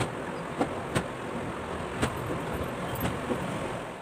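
About five light, sharp clicks and taps of a small nail polish bottle and its brush cap being handled while toenails are painted, over a steady low background rumble.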